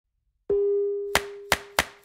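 Logo-animation sound effects: one ringing, chime-like tone about half a second in, then three sharp clicks about a third of a second apart.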